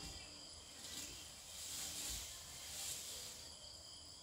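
Faint, steady chirring of crickets and other night insects, with a louder rustle of leaves and branches for about two seconds in the middle as an elephant pulls at a tree to feed.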